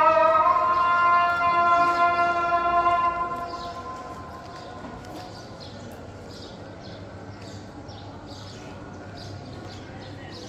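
A man's voice chanting a long, held, wavering note, the end of a chanted phrase, which fades out about three and a half seconds in. After it comes quieter open-air ambience with faint scattered taps.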